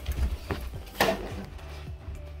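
Knife slitting the packing tape along the top of a cardboard box, with scraping and handling of the cardboard and a sharp click about a second in.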